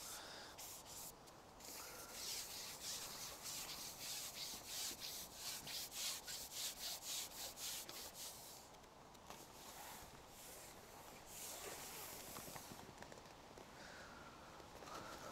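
Faint rhythmic rubbing of a carbon fishing pole sliding through the hands as it is fed out over the water, about three to four strokes a second, easing off about eight seconds in. A softer stretch of rubbing follows near the end.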